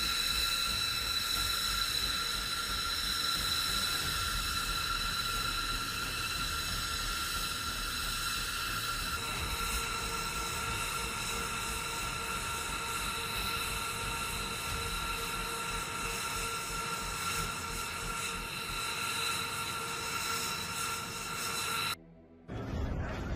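B-2 Spirit bomber's jet engines running on the flight line: a steady turbine whine made of several high tones. About nine seconds in the tone mix shifts and a lower tone joins.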